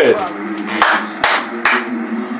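Three hand claps about half a second apart.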